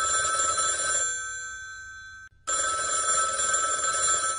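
Old-fashioned electric telephone bell ringing twice. The first ring cuts off about a second in and its tone dies away, and the second ring begins about halfway through.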